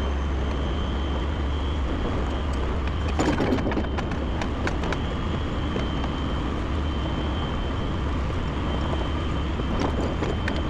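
Diesel engine of a 50-ton rotator tow truck running steadily as the truck creeps forward towing a telehandler behind it on a line. A cluster of short clanks and rattles comes about three to five seconds in.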